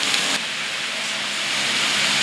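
A steady, even hiss with no distinct events, growing slightly louder toward the end.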